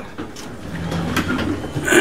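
Overhead garage door closing: a steady mechanical running noise that builds slowly as the door comes down, after a short throat-clear at the start.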